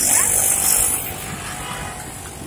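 Bus passing close alongside in street traffic: a loud hiss starts suddenly and lasts about a second, then its engine and road noise carry on lower.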